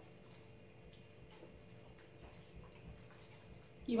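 Faint sounds of two people eating noodles with metal forks from ceramic bowls: a few small, scattered clicks over low room tone.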